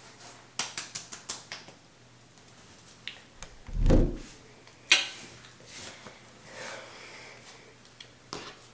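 Water dripping from wet hands and face into a bathroom sink, a quick run of small drips in the first two seconds. About four seconds in comes a low thump of the camera being handled, then a single sharp click.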